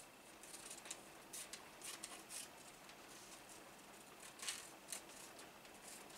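Small scissors snipping faintly and irregularly through wool backed with Soft Fuse fusible, cutting out appliqué motifs; the snips come in loose clusters, the clearest about four and a half seconds in.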